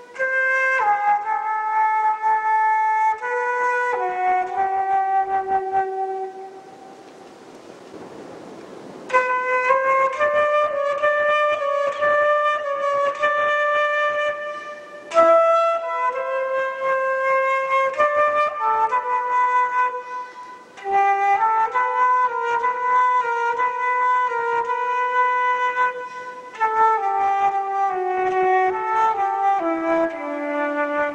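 A solo concert flute plays a slow melody of long held notes. The melody breaks off for a couple of seconds about seven seconds in, then goes on.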